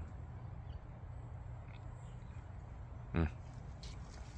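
A low, steady background rumble, with one short low vocal hum, a hesitation "hmm" from a person trying to recall a word, about three seconds in.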